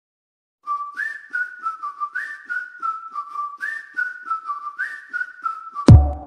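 Intro music: a whistled tune, repeating a short phrase about every second and a quarter over a light ticking beat, starts after a moment of silence. A loud hit near the end brings in a heavier beat.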